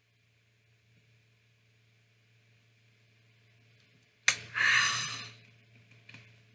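A person's loud breathy exhale, like an 'ahh' after a swallow of soda from a bottle, starting with a sharp click about four seconds in and lasting about a second; before it, near silence while drinking.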